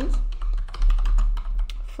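Typing on a computer keyboard: a quick, uneven run of key clicks over a steady low hum.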